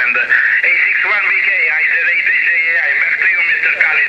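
A man's voice received over single-sideband on the 10-metre amateur band, coming from a Yaesu FTdx5000 HF transceiver's speaker. It has the thin, narrow, telephone-like sound of radio voice, with band hiss under it.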